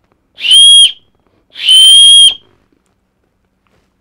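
Hand-turned bocote wooden keychain safety whistle blown twice, a short blast and then a longer one, each on one steady high note. Pretty loud.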